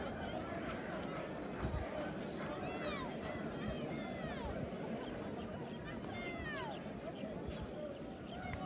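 Distant chatter of players' and spectators' voices across an open football ground, with several quick downward-sweeping bird calls about three, four and six seconds in.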